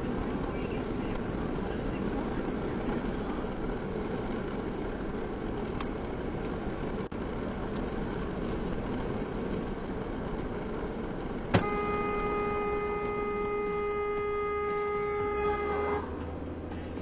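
Steady road and engine noise heard from inside a moving car. About twelve seconds in, a click is followed by a steady held tone that lasts about four seconds.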